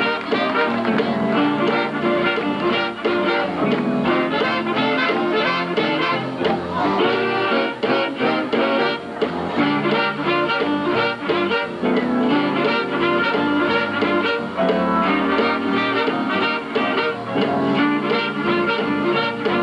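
Live western swing band playing a steady, up-tempo number, with saxophones, trumpet, fiddle and steel guitar over a regular beat.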